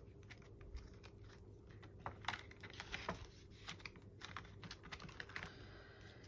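Quiet, scattered clicks and rustles of polymer banknotes and plastic binder sleeves being handled as cash is slipped into the pockets.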